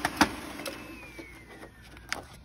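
Lexmark MS331 laser printer finishing a print job: a few sharp clicks as sheets are fed out, then its running noise fades while a thin whine falls in pitch as the mechanism winds down.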